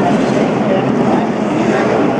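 Grandstand crowd cheering and yelling, with many voices at once, over NASCAR stock car engines running on the track. The crowd is reacting to the race win.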